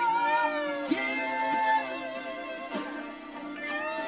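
Live rock band music: a wordless voice holds and slides between long notes, moaning up and down, over guitar and drums.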